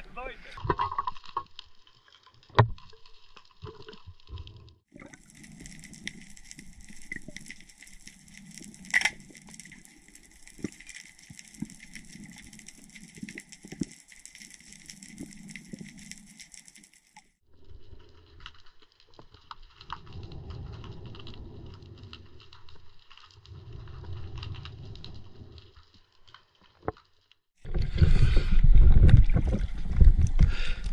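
Underwater sound picked up through a diving camera: a steady hiss with dull thumps every two or three seconds and one sharp click about nine seconds in. Near the end the camera breaks the surface and loud splashing and water noise take over.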